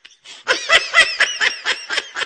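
A young monkey being tickled, letting out a rapid run of short, high-pitched squeaky calls, like laughter, about seven a second. They start about half a second in.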